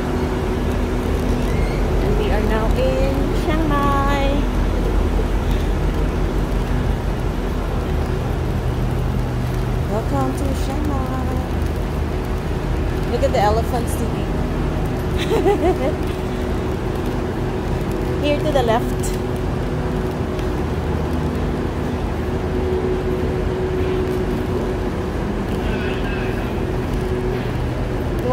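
Railway station platform ambience: a steady low rumble and hum, with scattered distant voices.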